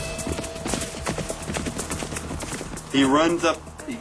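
Rapid hoofbeats of a hoofed animal galloping over dry ground, a quick run of many strikes that fades out about three seconds in.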